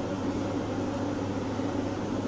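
Steady low hum with an even background hiss, like a fan or air-conditioning unit running, with no distinct events.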